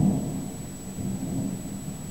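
Distant thunder from an approaching thunderstorm: a low rolling rumble, loudest as it begins, easing off, then swelling again about a second in before dying away.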